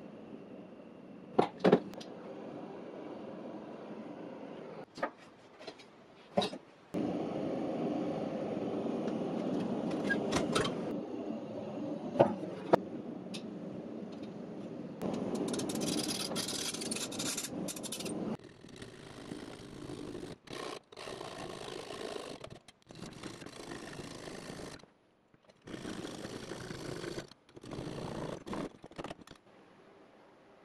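Workshop sounds from brass trumpet parts being desoldered and worked with a handheld butane torch and hand tools, in short pieces that cut off abruptly. A long steady rushing noise forms the loudest stretch. Around it come scraping and rubbing on metal and a few sharp knocks.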